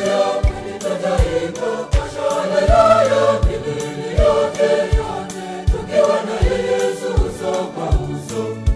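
A church choir singing a Swahili gospel song in full voice, over backing music with a steady low beat about every three-quarters of a second.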